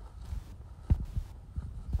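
Dull, low thumps of footsteps on the ground, picked up by a handheld phone while walking. There are about four uneven steps, the loudest about a second in.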